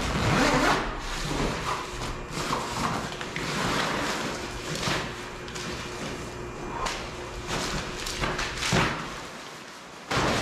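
Plastic tarp crinkling and a duffel bag rustling as the bag is handled and dragged across the tarp, with several louder swishes. The rustling thins out near the end.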